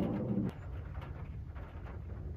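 Airplane passing overhead, heard from inside a van as a steady low drone. A steadier pitched hum stops abruptly about half a second in.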